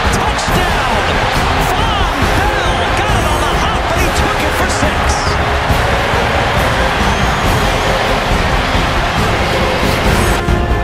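A stadium crowd cheering a touchdown, mixed with background music.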